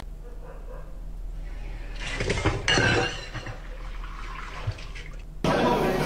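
Water splashing and a pot clattering in a kitchen sink, loudest between about two and three seconds in. Near the end it cuts suddenly to people talking.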